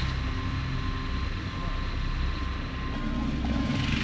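Car driving along a road, a steady rumble of engine and road noise heard from inside the cabin.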